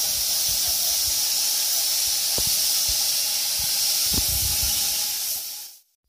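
Compressed-air paint spray gun hissing steadily while spraying grey paint, with a few faint knocks. The hiss fades out near the end.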